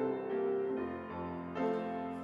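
Piano playing a hymn accompaniment between verses, with held chords leading into the next verse.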